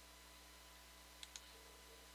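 Two quick computer mouse clicks, about a tenth of a second apart, a little over a second in, against near-silent room tone with a faint steady electrical hum.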